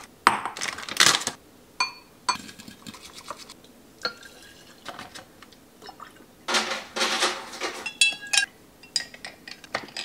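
Glass kitchenware clinking, some clinks ringing briefly, then liquid poured from a carton into a glass jar for about a second, followed by a few more ringing glass clinks.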